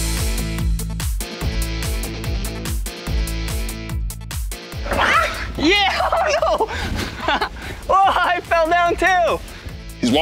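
Upbeat electronic background music with a steady beat; from about halfway, a voice rising and falling in pitch over it.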